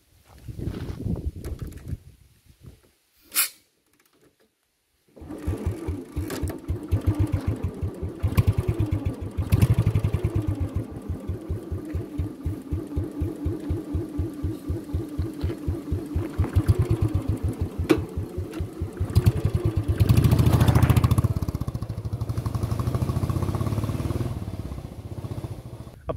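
Royal Enfield Standard 350 single-cylinder engine starting about five seconds in and idling with an even thump, about four beats a second. It is revved up briefly around twenty seconds in, then settles back to idle.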